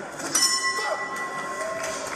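Boxing ring bell struck once about a third of a second in, a ringing tone that holds for about a second and a half and sounds the end of a round.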